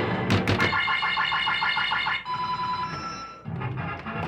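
Coin-operated pinball slot machine playing its electronic sound effects: a few sharp clacks at the start, then a quick run of warbling beeps, then a held beep tone and a brief higher one.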